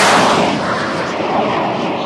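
A title-card sound effect: a loud, noisy, explosion-like hit that starts sharply and then fades away slowly over about two seconds.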